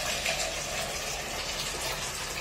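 Water running steadily from a faucet into a small pot, filling it.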